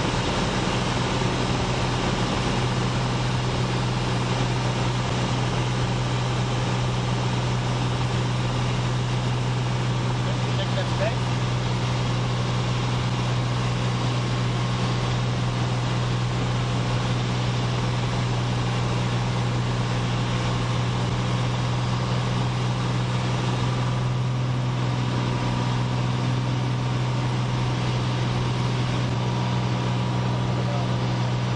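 Piper PA-32 Cherokee Six's six-cylinder piston engine and propeller, a steady low drone heard inside the cabin in flight.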